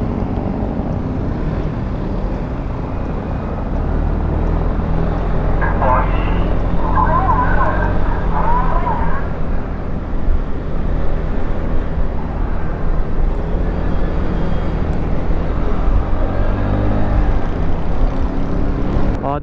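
FKM Slick 400 maxi-scooter running as it pulls away and accelerates from walking pace to about 44 km/h, heard as a steady rumble with road and wind noise that gets louder about four seconds in.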